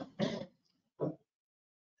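A man clearing his throat: a short rasp just after the start and a briefer one about a second in.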